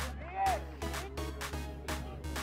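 Background music with a steady beat over a constant bass line, and a single sliding, arching note about half a second in.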